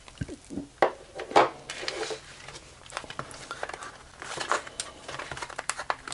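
Hands handling a plastic keypad wall switch and a small cardboard box: a few small clicks and knocks, the clearest about a second in, then a run of light scraping and rustling in the second half.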